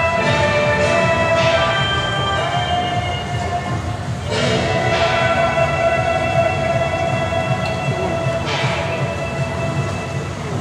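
Loud procession music. A shrill wind instrument holds long notes that step slowly in pitch, over a dense low rumble of drumming. Several sharp crashes fall about a second and a half in, twice around four to five seconds, and again near the end.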